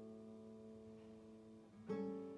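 Nylon-string classical guitar played solo: a plucked chord rings and slowly fades, then a new chord is plucked near the end.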